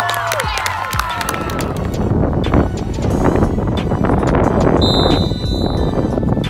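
Spectators cheering and shouting that die away in the first second, then strong wind buffeting the microphone over a hip-hop beat.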